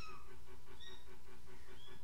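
Kittens giving a few short, faint, high-pitched mews, about three or four squeaks in two seconds, over a steady low background hum.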